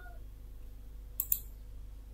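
Computer mouse button clicked twice in quick succession a little over a second in, sharp and short, over a faint steady low hum.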